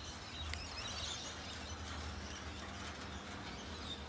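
Faint, steady outdoor background noise: a low hum under an even hiss, with a faint click about half a second in.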